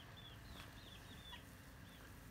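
Near silence, with a bird faintly chirping in a run of short, high chirps, several a second.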